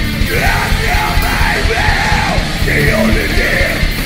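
Heavy metal band playing live: a yelled lead vocal over distorted electric guitar and busy, fast drumming. The vocal comes in about a third of a second in and carries on in phrases.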